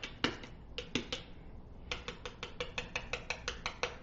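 A utensil clicking against a bowl while mashing butter and garlic together: a few clicks near the start, then a quick steady run of about six a second from about two seconds in.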